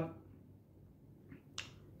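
Quiet room tone during a pause in speech, with one short, sharp click about one and a half seconds in: a mouth click as the lips part just before the next word.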